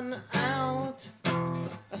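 A song: a voice singing two short phrases over strummed acoustic guitar.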